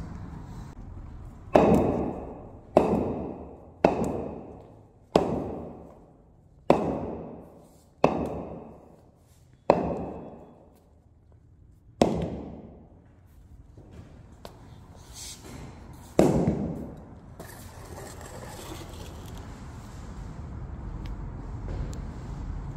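A bowling ball dropped again and again onto shoe insoles on a concrete floor: nine heavy thuds, each with a short ringing fade, mostly a second or so apart, with the last two further apart. A steady low noise follows near the end.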